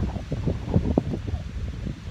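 Wind buffeting the microphone: an uneven low rumble with gusty bumps.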